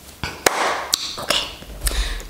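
A few sharp clicks and taps with a soft rustle between them, as makeup containers are handled.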